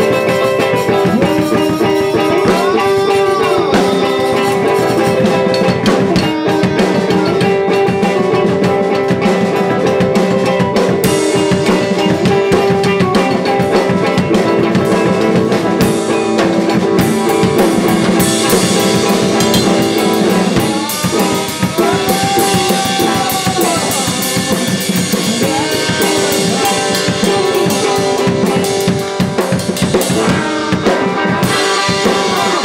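A live band plays: a small drum kit, with bass drum, snare and cymbal hits, under a loud, sustained amplified electric guitar.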